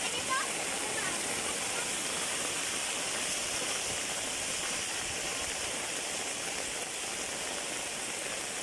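Heavy rain falling steadily, with rainwater running across and along a paved road.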